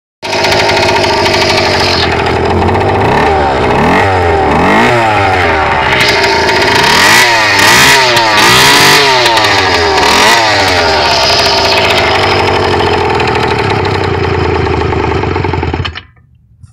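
80cc two-stroke bicycle engine running loud, idling steadily, then blipped up and down several times in a row, settling back to a steady idle before cutting off suddenly at the end. The owner judges the mixture too rich.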